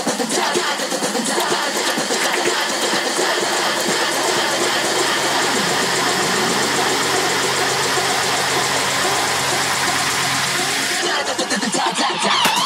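Techno breakdown: a dense, noisy electronic build-up with no kick drum or low bass, thinning out near the end.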